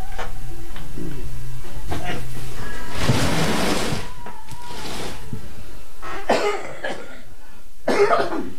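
A person coughing and clearing her throat a few times: about a second of rough coughing near the middle and shorter coughs near the end, with rustling as a cardboard box is handled.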